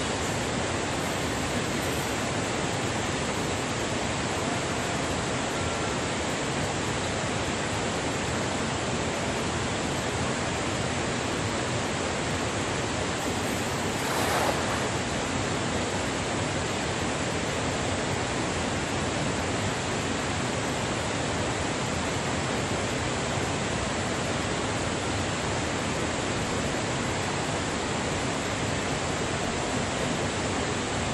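Steady rushing of stream water, with a brief splash about halfway through as a cast net lands on the water.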